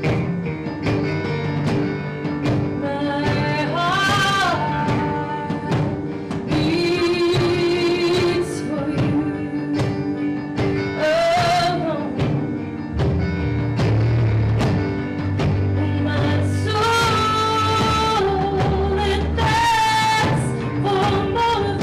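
Live band playing a song: a woman sings lead over electric keyboard, drum kit with cymbals, and electric guitar. The low end grows fuller about two-thirds of the way through.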